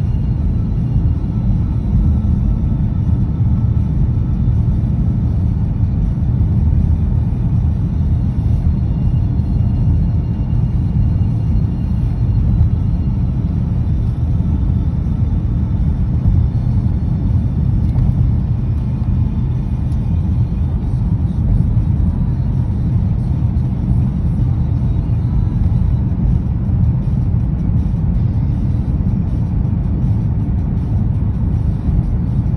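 Steady low road rumble of a moving car heard from inside the cabin: tyre and engine noise at a constant cruising speed.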